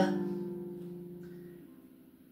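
A strummed ukulele chord ringing out and fading away, dying almost to silence by the end.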